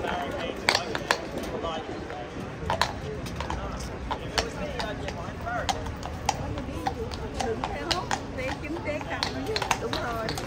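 A shod cavalry horse's hooves clopping irregularly on paving stones as it steps and turns, over the chatter of a crowd.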